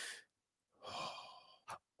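A person breathing softly close to the microphone: two quiet breaths, then a brief click near the end just before speech resumes.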